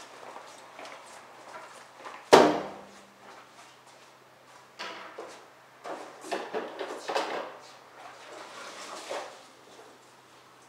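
One sharp knock a little over two seconds in, then several seconds of scattered clatter and knocking as a string mop and a wheeled plastic mop bucket with wringer are handled.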